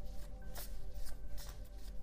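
A deck of tarot cards being shuffled by hand: a quick run of light card flicks and taps, over faint background music.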